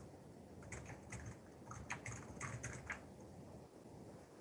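Typing on a computer keyboard: a quick run of about a dozen keystrokes, starting just under a second in and stopping about three seconds in.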